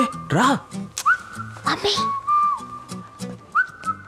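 Whistling: long held notes with quick upward slides between them, over background music, with a few short vocal exclamations.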